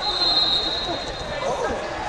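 Voices of spectators and coaches in a wrestling gym, with a high, steady squeal lasting about a second at the start.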